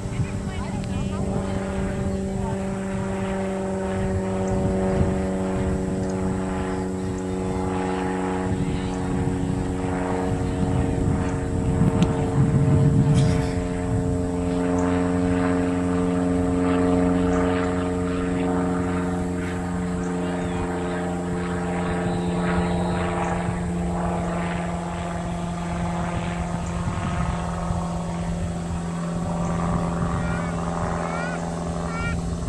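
A steady engine drone, one constant low hum with several overtones, running throughout, with faint voices beneath. A louder rough rumble rises and falls about eleven to thirteen seconds in.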